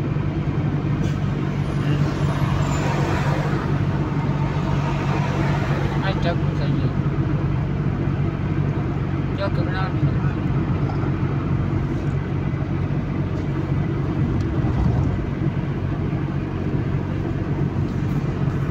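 Steady in-cabin noise of a car cruising at motorway speed: a constant low engine and drivetrain hum under even tyre noise from the road.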